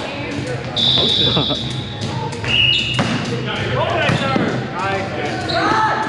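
Athletic shoes squeaking on a hardwood gym floor during a volleyball rally: several short, high squeaks, with a sharp knock of the ball about three seconds in, all echoing in a large gym.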